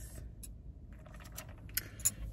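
Low, steady car-cabin rumble with a few faint clicks and small handling sounds.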